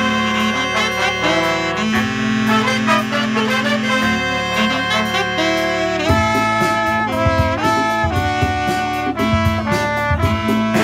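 Live five-piece brass combo of trumpet, trombone, and alto, tenor and baritone saxophones playing: a low repeating riff under busy rhythmic parts, then about six seconds in the horns come in together on long held notes.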